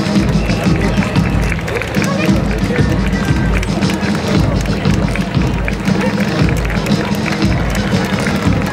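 March music with a steady, regular drum beat, over crowd voices and the footsteps of schoolchildren marching past.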